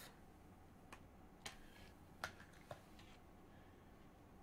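Near silence with a few faint ticks as the paper protective wrap is peeled off a new iPhone 12 Pro.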